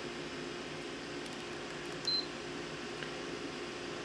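One short, high-pitched beep about two seconds in from a handheld infrared surface thermometer taking a reading on a hot laptop's case, over a steady low hum.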